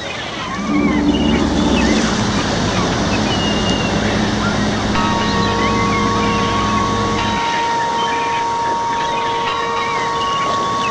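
Nautical sound effects: a steady wash of wind and sea noise with high, gull-like cries, and a low ship's horn held from about half a second until about seven seconds in. A steadier, higher two-note tone joins about halfway through.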